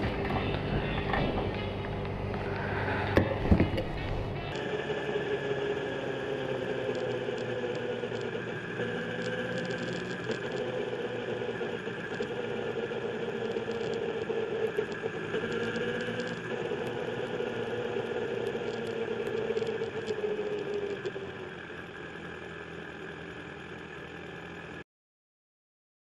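Kawasaki Z1000's inline-four engine running steadily on the road, getting quieter near the end. Before it, at the petrol pump, a couple of sharp clicks about three seconds in.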